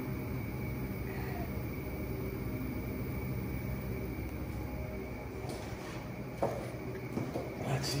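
Walk-in cooler's evaporator fans running at low speed because there is no call for cooling, a steady hum with a faint steady high whine. A single knock about six and a half seconds in.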